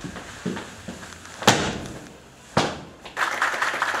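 A few separate sharp thumps, the loudest about a second and a half in, then a roomful of people begins clapping about three seconds in.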